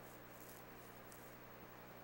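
Near silence: a faint, steady low hum.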